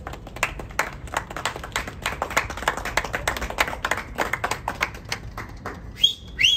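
A small group of people clapping, the claps dense and irregular and starting at once.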